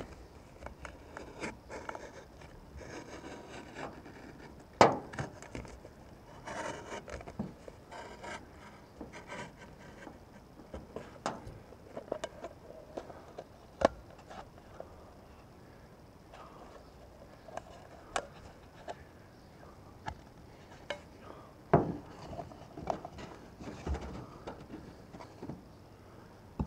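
A folding utility knife cutting and scraping through the cardboard wall of a Pringles can, with the can rubbed and shifted on a canvas pad. There are scattered sharp clicks and knocks throughout, the loudest about five seconds in.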